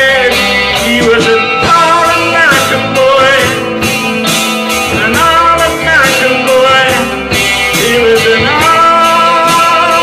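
A live rock band playing: guitar and a singer over a steady drumbeat, with long notes that bend and fall away every few seconds.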